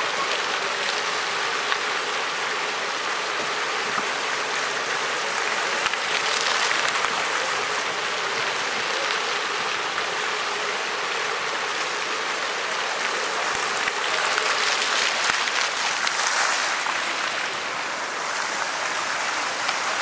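Water jets of a large public fountain spraying and splashing steadily into its basin.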